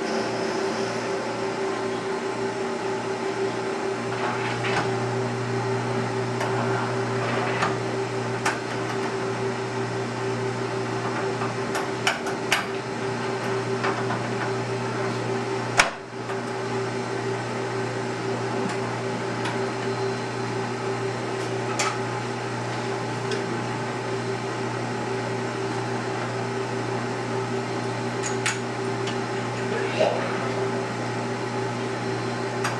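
Wood lathe running slowly while a Forstner bit bores into a pepper mill blank: a steady motor hum that grows fuller about four seconds in, with a few sharp clicks scattered through, the loudest near the middle.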